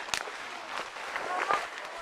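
Footsteps and clothing brushing through dense undergrowth as several people hurry through brush, with a sharp click just after the start.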